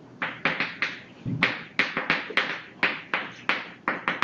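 Chalk writing on a blackboard: a quick, irregular series of sharp taps and short scrapes, about three or four a second, as a line of text is written.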